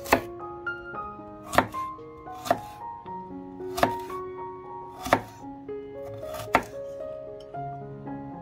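A chef's knife chopping carrot on a wooden cutting board: about six sharp strokes, spaced a second or so apart, with the last near the end of the chopping about two-thirds of the way in. Soft piano music plays underneath.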